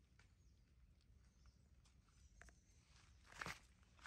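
Faint rustling and light ticks of a baby monkey's hands and feet moving over dry leaves and dirt, with one brief, louder rustle about three and a half seconds in.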